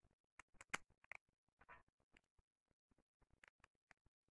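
Faint, scattered clicks and taps of a bolt and lock nut being fitted by hand through a homemade PVC pulley wheel and its PVC bracket, the sharpest click a little under a second in.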